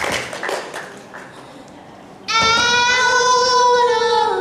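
Music from a backing track with a steady beat fades over the first second. After a short quieter gap, a singer comes in about halfway through and holds one long, loud note into a microphone.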